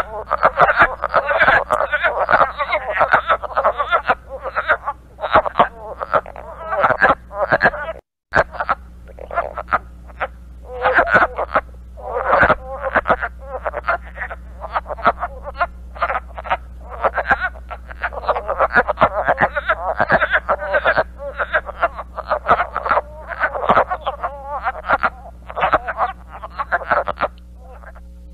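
Recorded chorus of several wood frogs calling: rapid series of harsh, staccato, duck-like quacks, overlapping in bursts, over a low steady hum. There is a brief break about eight seconds in.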